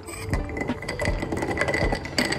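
Milk poured over ice in a tall glass, with a dense run of small clinks and crackles from the ice, over faint background music with a regular beat.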